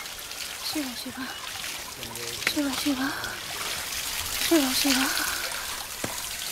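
Water poured from a pot over a stone Shiva lingam in a ritual bathing, splashing and trickling steadily. Short voice sounds come over it a few times.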